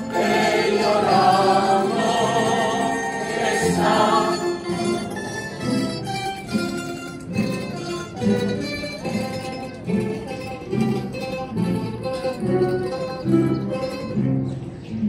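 A choir singing a Spanish devotional hymn (gozos) with wavering sustained voices, backed by a plucked-string ensemble of guitars. After about four seconds the voices fall back and the plucked strings carry on in short, evenly spaced chords.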